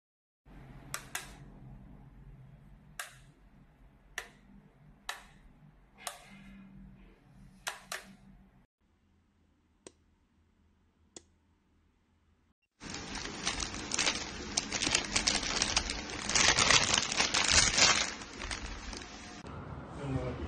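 A Legrand Galion wall light switch clicking as its wide rocker plate is pressed, about eight sharp clicks, some in quick pairs. Later, plastic packaging bags crinkling loudly as they are handled for about seven seconds.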